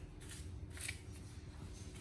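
Faint rustling with two or three short scratchy strokes, as of hands rubbing together to brush off food crumbs.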